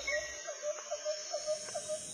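Background music of short notes repeated at one pitch, about four a second, over a steady high chirring like crickets.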